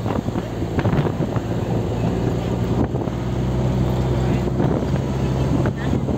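A vehicle's engine drones steadily while driving, its pitch shifting about three seconds in, with wind buffeting the microphone.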